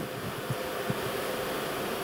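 Steady background hum and hiss of the hall, with a couple of faint soft knocks about half a second and a second in.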